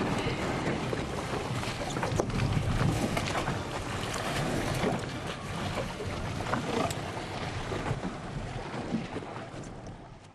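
Wind buffeting the microphone over choppy sea water, with irregular splashes of water; the sound fades away near the end.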